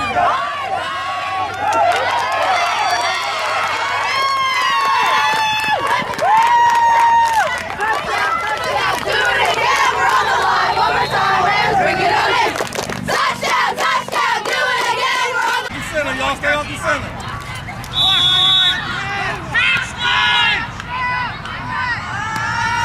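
Spectators on the sideline yelling and cheering during a youth football play, many voices overlapping. A short, shrill whistle blast sounds near the end.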